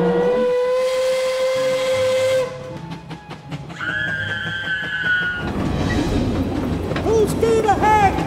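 Steam-train whistle blowing one steady tone over a hiss of steam for about two and a half seconds, followed about four seconds in by a shorter, higher whistle tone. Near the end come wavering, sliding tones.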